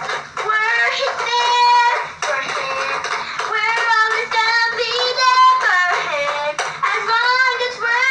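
A young girl singing in a high voice, in long held notes that slide up and down in pitch.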